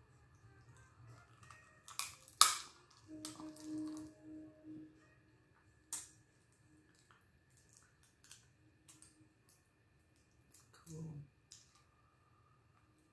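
Crab shell cracking and clicking as pieces are picked apart by hand and eaten, with a sharp crack a little over two seconds in the loudest, another about six seconds in, and small ticks in between. A short low voice sound comes near the end.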